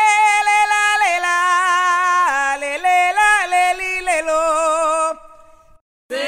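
A single voice singing a wordless melody in long held notes with vibrato, stepping down in pitch a few times, part of a cumbia sonidero DJ spot. It breaks off about five seconds in, leaving a short fading echo.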